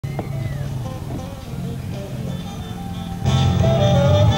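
Music playing, with a steady low hum beneath; it turns suddenly louder and fuller about three seconds in.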